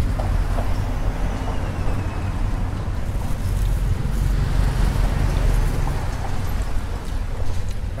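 Steady street traffic noise: a continuous low rumble with no single event standing out.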